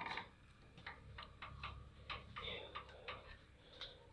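Irregular faint clicks and ticks, several a second, over a steady low hum.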